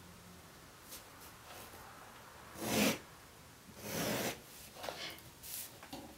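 Pencil drawn along a ruler on paper: two short strokes about three and four seconds in, followed by a few fainter rubs of hand and ruler on the paper.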